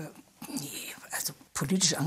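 Quiet, breathy speech, much of it whispered, with fuller voiced speech coming in near the end.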